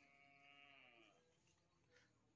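Near silence, with one faint, distant bleat-like animal call that holds steady for about a second and then falls in pitch.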